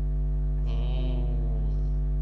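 Steady low electrical hum with a buzzy stack of overtones, carried by the clip-on microphone's recording. A soft, wordless voice murmurs faintly through it for about a second near the middle.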